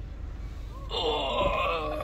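A person's drawn-out vocal sound, held for about a second and wavering slightly in pitch, starting about halfway through.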